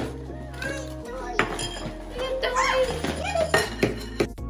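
Plastic parts of a spin-art toy knocking and clattering on a wooden table as they are unpacked, a few sharp knocks, the sharpest near the end. Background music plays throughout, with children's excited voices.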